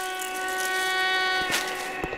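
Background music: a chord of several steady tones held without a break, over a soft airy hiss, with a small click about one and a half seconds in.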